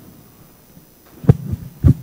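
A lectern microphone being handled on its stand: three dull thumps in quick succession in the second half, the first and last the loudest.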